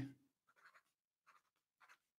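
Pen writing on paper: three faint, short strokes.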